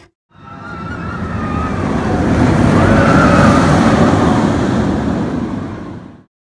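A rushing, rumbling swell of noise that builds for about three seconds and then fades out, with a faint high whine riding on top.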